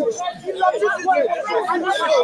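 Several men's voices talking and shouting over one another, close up.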